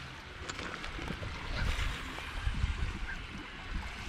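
Wind rumbling on the microphone over small lake waves lapping on a stony shore, with a few faint ticks.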